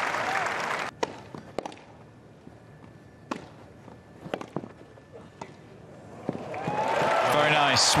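Tennis rally: rackets strike the ball about five times, each a sharp single crack a second or so apart, over a hushed crowd. Near the end, crowd applause and cheering rise as the point ends.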